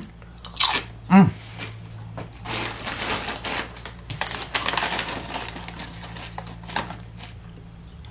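Crunchy high-protein crisps being chewed with the mouth open enough to hear, a crackly crunching that runs for several seconds, after a short 'mm' about a second in.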